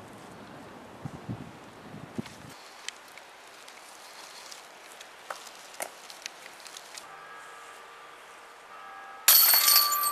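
A disc golf putt hitting the hanging chains of an Innova basket near the end: a sudden loud metallic jingle and rattle of chains that keeps ringing. Before it there are only faint scattered ticks.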